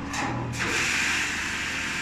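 Two short hissing bursts, then a steady hiss that sets in about half a second in and holds level.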